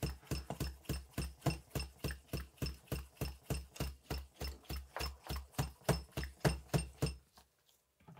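Hand-held bicycle shock pump being worked in quick short strokes, about four a second, each stroke a short knock, stopping about seven seconds in. The pump is pressurising a Fox shock's IFP chamber through a nitrogen needle while a leak is being traced.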